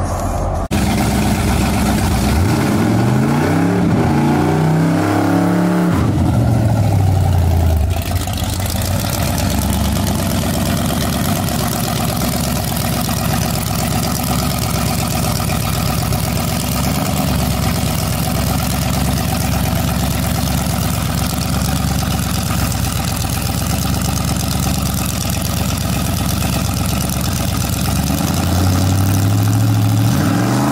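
A drag-racing pickup truck's engine revved up and down in several quick blips, then held at steady high revs for a long stretch. The revs climb again near the end as the truck gets ready to leave the line.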